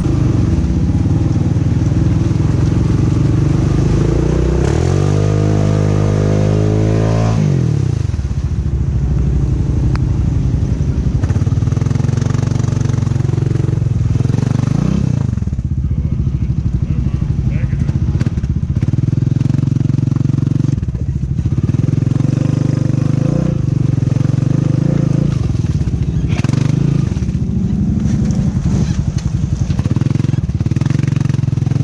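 Honda Rubicon ATV's single-cylinder engine running under load while riding through mud ruts. It revs up in a rising whine from about five seconds in, drops off sharply near eight seconds, then rises and falls several more times.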